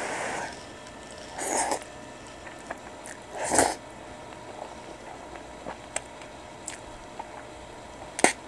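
Spicy carbonara instant noodles being slurped off chopsticks: three short slurps, the loudest about three and a half seconds in, followed by faint clicks of chewing.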